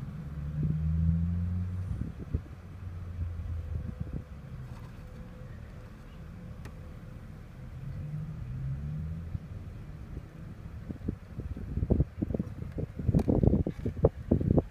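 A low engine rumble that swells over the first couple of seconds and again about eight seconds in, with a run of soft knocks and bumps near the end.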